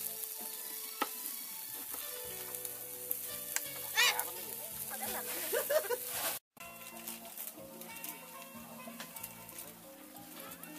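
Meat skewers sizzling and crackling over a charcoal grill, with a few sharp clicks as chopsticks turn them. The sizzling stops abruptly about two-thirds of the way through, leaving quieter sound.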